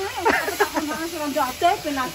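Speech: a person talking, with a faint steady hiss behind it.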